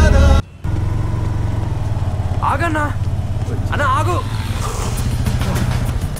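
Music cuts off abruptly just under half a second in. A steady, low engine rumble with fast, even pulses then runs on, with two short bursts of a man's voice over it.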